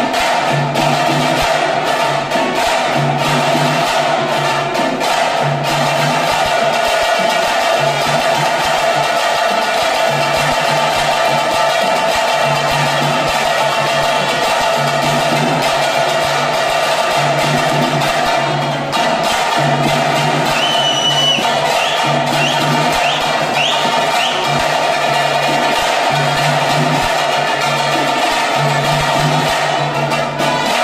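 Drum-led percussion music with a steady, repeating beat accompanying the tiger dance, with a few short rising whistles about two-thirds of the way through.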